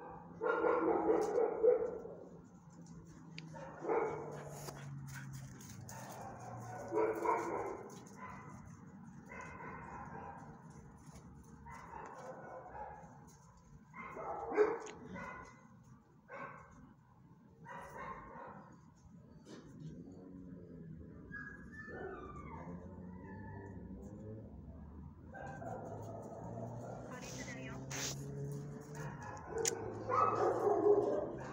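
A dog barking in separate bouts about a second long, every two to three seconds, loudest at the start.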